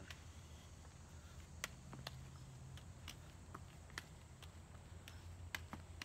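Faint soft taps of juggling balls being caught in the hands, coming at an uneven pace of about two a second, over a low steady background hum.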